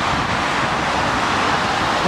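Steady hiss of road traffic: car tyres on rain-wet asphalt.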